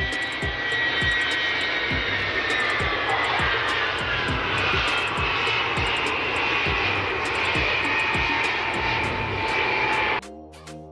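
Ilyushin Il-76's four turbofan jet engines running on the runway during the landing rollout: a steady rushing roar with high whining tones that slowly drift in pitch. A background music beat thumps about twice a second underneath.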